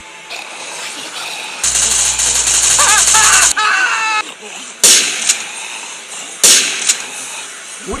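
Gunfire sound effects: a burst of rapid automatic fire lasting about two seconds with a high voice crying out over its end, then two single sharp shots about a second and a half apart.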